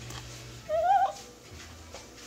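A pet's short, high-pitched cry, about half a second long, rising and then wavering, a little under a second in.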